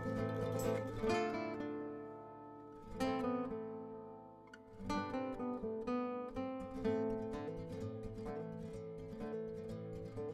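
Background music played on an acoustic guitar. Plucked and strummed chords ring out and fade, with fresh strokes every couple of seconds.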